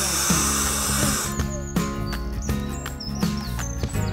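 Background music with a steady beat; over it, for about the first second, a loud hissing rush of breath being blown into the valve of an inflatable bouncy castle, which stops abruptly.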